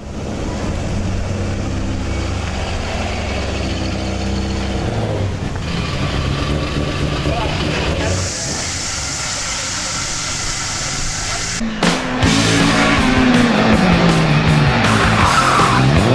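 Racing car engines across several edits: first a car's engine running in the paddock, then, after a cut, a car on the hill road with engine revs repeatedly rising and falling through gears and tyres squealing as it drifts.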